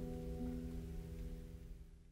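The last acoustic guitar chord of a song ringing out and slowly dying away.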